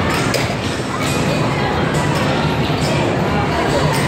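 Steady din of a busy indoor amusement park: a mix of people's voices and background music, with a few brief knocks.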